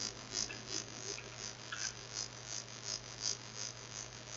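Faint computer-keyboard key clicks, about three a second, over a steady low mains hum.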